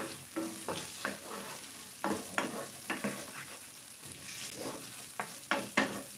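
Diced potatoes sizzling in oil in a frying pan while a wooden spatula stirs them, with irregular knocks and scrapes of the spatula against the pan.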